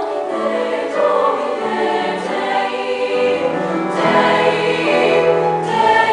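Treble choir of high-school girls singing sustained chords in several parts.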